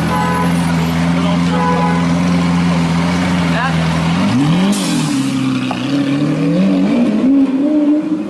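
Lamborghini supercar engine held at a steady raised rev for about four seconds, then revved up and down in quick blips with the pitch climbing, while flames shoot from its exhaust.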